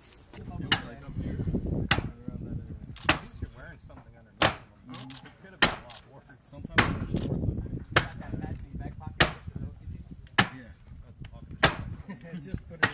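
Sledgehammer driving a steel tent stake into hard ground: ten evenly paced strikes, about one every second and a quarter, each a sharp metal-on-metal clang with a brief high ring.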